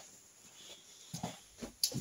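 A pause in a man's speech: a couple of faint, short vocal sounds like hesitation noises or breaths in the second half, then a short click near the end.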